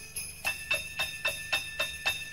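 Sleigh bells shaken in a steady beat, about four shakes a second, starting about half a second in, with a faint high held note behind them, as a Christmas song's intro begins.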